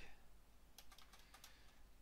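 Faint keystrokes on a computer keyboard: a short scatter of key taps, most of them about a second in.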